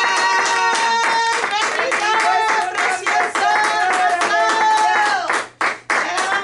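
Hands clapping in a quick, steady rhythm, with voices singing held, melodic notes over the clapping. The clapping breaks off briefly near the end.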